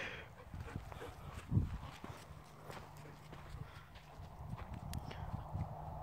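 Faint, irregular footfalls on packed dirt, with a soft thump about a second and a half in.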